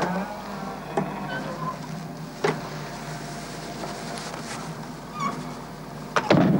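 A steady low hum, with two sharp clicks about a second and two and a half seconds in, and a few brief squeaks.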